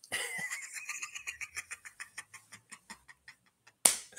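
A man laughing: a long run of quick breathy pulses, about seven a second, fading over about three seconds, then a short sharp burst near the end.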